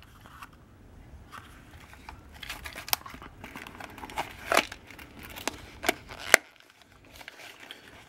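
A hand-stitched leather belt pouch and a metal Altoids tin being handled, the tin slid in and out of the pouch: leather rubbing and scuffing, with several sharp clicks and taps.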